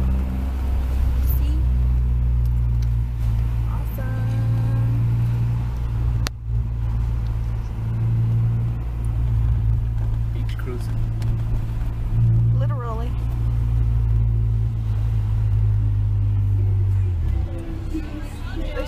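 Honda Prelude's engine and exhaust droning steadily at low revs, heard from inside the cabin while cruising, with faint voices now and then and a sharp click about six seconds in.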